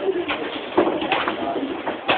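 Indistinct, low-pitched voices with no clear words.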